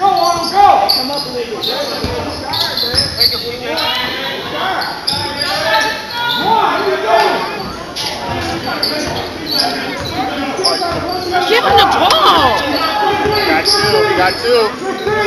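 Basketball bouncing on a hardwood gym floor during play, against shouting voices of players and spectators, all echoing in a large hall.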